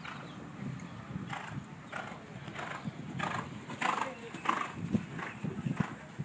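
A horse's hooves striking soft sand arena footing at a walk: a soft, even beat of about one and a half steps a second, starting about a second in.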